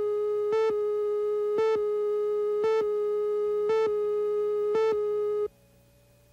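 Steady, buzzy line-up tone on a videotape slate, broken by a short pip about once a second as the leader counts down. It cuts off suddenly about five and a half seconds in, leaving near silence.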